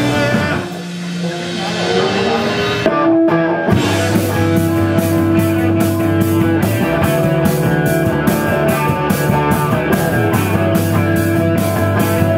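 Live rock band playing an instrumental passage with electric guitars, bass and drums. Early on the drums drop out under held guitar notes, then the full band comes back in about four seconds in with a steady beat of about two strikes a second.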